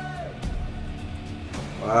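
Film soundtrack of a battle scene: music over a deep, steady low rumble that sets in about half a second in.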